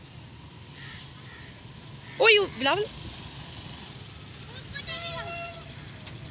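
Outdoor background with a steady low traffic hum. About two seconds in come two short, loud, high-pitched vocal whoops, and around five seconds a fainter, longer held call.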